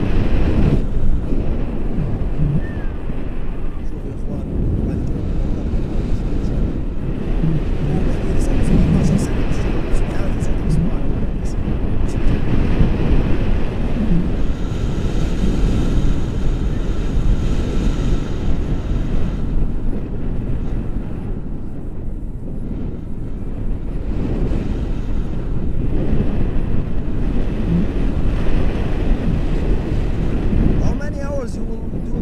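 Wind buffeting the camera's microphone in paragliding flight: a loud, steady low rumble of rushing air.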